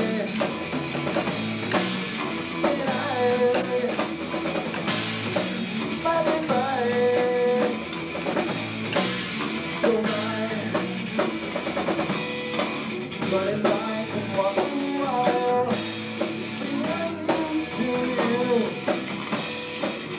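Three-piece rock band playing live: electric guitar, bass guitar and drum kit, with singing.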